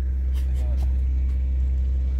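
Ship's engine running with a steady low rumble.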